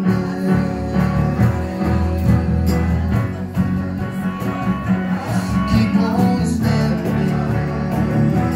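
Live band playing an instrumental passage of a soul-pop ballad: an electric bass guitar carries a prominent moving bass line under keyboard chords, with light percussion ticks.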